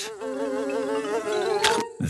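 Cartoon sound effect of a fly buzzing, a wavering buzz, ending near the end in a short sharp snap as the Venus flytrap shuts on it.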